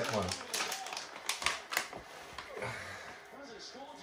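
A few sharp clicks of handheld dog nail clippers being handled, bunched in the first two seconds and then quieter.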